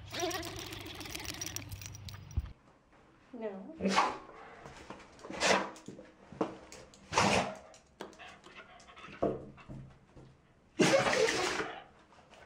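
A person laughing, then a dog sneezing again and again: short, sharp sneezes every one to two seconds, with a longer and louder one near the end.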